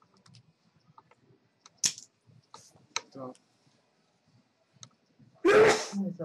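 Clay poker chips clicking against each other on the table in light, scattered clicks, with a couple of sharper clacks about two and three seconds in. Near the end comes a short, loud burst from a person.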